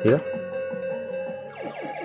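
Electronic sound from a Fruit King 3 fruit slot machine: a steady held tone with a few higher tones over it, ending about a second and a half in. It plays as a double-up bet is lost and the prize counter drops to zero.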